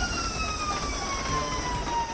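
Ambulance siren wailing, its single tone falling slowly and steadily, over the low rumble of the vehicle's engine and road noise.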